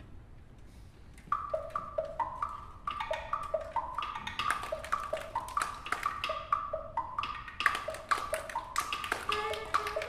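Orchestral percussion playing a fast rhythmic pattern of short struck notes that alternate between two pitches, starting after about a second of quiet and growing denser and louder toward the end.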